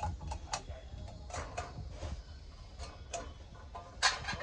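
A brass tiffin carrier being handled: a string of sharp, irregularly spaced clicks and light knocks from its stacked containers and clamp handle.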